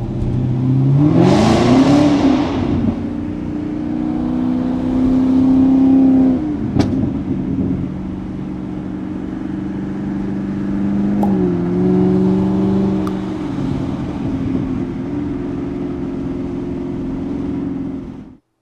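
Chevrolet Camaro ZL1's supercharged V8, heard from inside the cabin, revs up hard in the first two seconds with a rush of intake and exhaust noise. It then pulls steadily through the gears, its pitch dropping at upshifts about seven and eleven seconds in.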